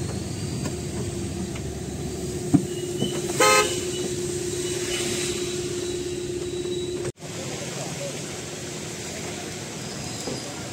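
A vehicle horn gives one short toot about three and a half seconds in, over the steady engine hum and road noise of a vehicle driving on a wet road, heard from inside the cab. The sound breaks off suddenly about seven seconds in, and a quieter outdoor background follows.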